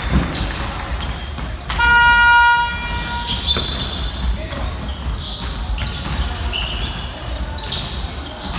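Basketball game buzzer sounding once, one steady electric tone held for about a second, about two seconds in, over a ball bouncing and voices on the court.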